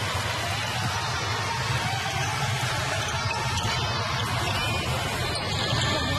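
Basketball arena crowd noise with music playing underneath, steady throughout.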